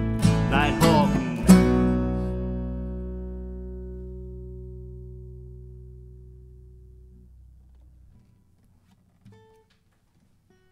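Acoustic guitar playing the last few strums of a song. It ends on a final chord about a second and a half in, which rings out and fades away over about six seconds. A faint click comes near the end.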